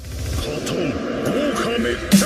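Opening of an electronic dubstep remix used as an outro track: a voice sample over a dense hissing swell that fades in at the start, before the beat comes in.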